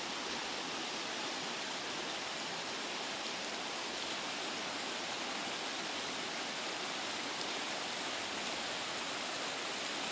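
Shallow rocky river rushing steadily over and around stones, an even, unbroken sound of running water.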